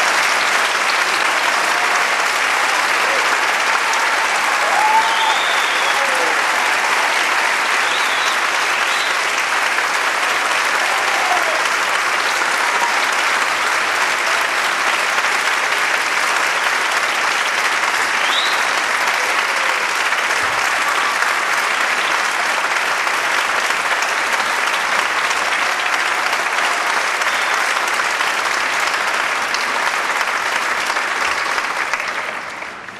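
Large concert-hall audience applauding steadily, with a few brief calls rising above the clapping in the first half.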